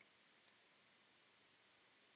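Near silence with a few faint computer mouse clicks in the first second, then room tone.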